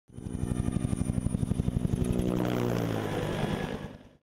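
Helicopter with its rotor beating rapidly, about ten beats a second, over a steady engine whine. The beating fades after about two seconds, the whine sinks slightly in pitch, and the sound dies away at the end.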